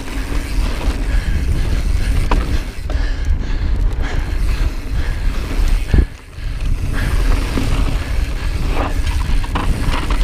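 Mountain bike descending a rocky dirt singletrack: tyres rolling and the bike rattling over rocks, with a steady wind rumble on the camera microphone. A sharp knock about six seconds in.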